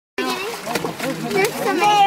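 Several people talking over one another without clear words, with water splashing as pink salmon are lifted from a dip net into water-filled plastic bins. The sound cuts out completely for a moment at the very start.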